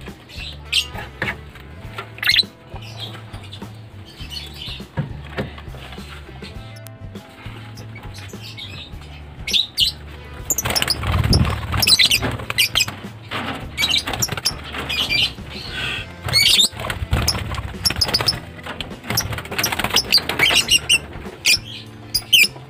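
Background music with a steady beat, over lovebirds squawking and scuffling in a wire cage as a hand reaches in to catch one. The squawks and clatter get busier and louder from about ten seconds in.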